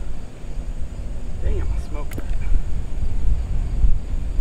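Wind buffeting the microphone in an uneven low rumble on an open golf tee, with faint voices in the distance about halfway through.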